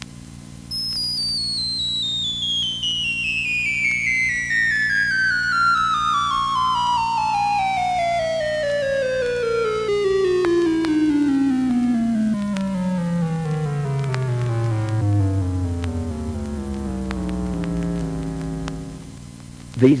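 Dubreq Stylophone 350S played with its stylus in one long descending run of stepped notes, from a high whistle-like pitch down to a low buzz over about sixteen seconds. The run shows off the instrument's six-and-a-half-octave range.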